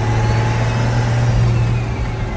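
Chainsmoker rat rod cruising on the highway at steady speed, heard from inside the cab: a constant low engine drone under road and wind noise.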